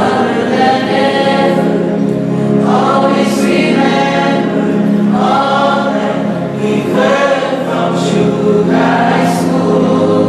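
A small choir of mixed male and female voices singing a farewell song together through handheld microphones, in continuous phrases over a sustained low tone.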